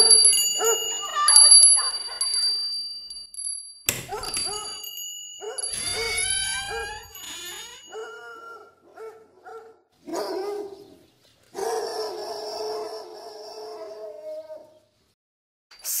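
Children's voices calling out and chattering, with small bells ringing steadily through the first half. A sharp click comes about four seconds in, and a short near-silent gap falls just before the end.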